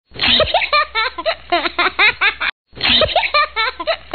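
A person laughing hard in quick repeated ha-ha bursts. The laughter breaks off for a moment about halfway through, then starts again.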